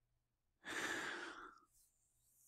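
A man's audible breath, a single sigh-like exhale that starts about half a second in and fades out after about a second.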